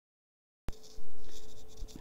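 Silence, then a click as a recording starts about two-thirds of a second in, followed by about a second of loud scratchy rustling that fades, over a faint steady hum.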